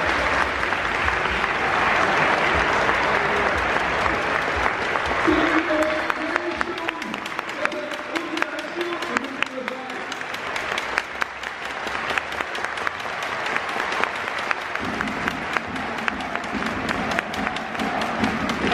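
Stadium crowd applauding: dense clapping at first, thinning to scattered individual claps, with a public-address voice heard through the middle.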